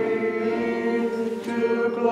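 Congregation singing a hymn together, holding each note for a long time.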